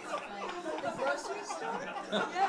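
Quiet murmur of several people's voices talking over one another, with no single clear speaker.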